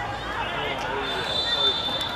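Players and onlookers shouting and calling out on a football pitch. About a second and a half in comes a short, high, steady whistle blast, a referee's whistle.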